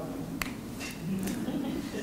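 A single sharp click about half a second in, with a few fainter ticks and faint murmuring voices in a quiet hall.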